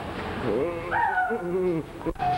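A person's voice making wordless, sliding high-pitched sounds in several short rising and falling calls.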